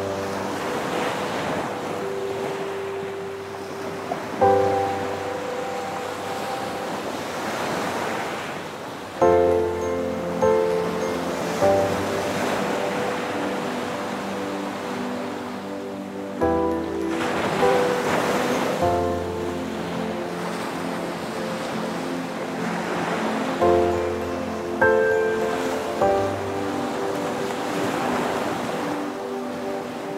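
Ocean surf washing onto the shore, swelling and fading every several seconds, under slow, gentle piano chords.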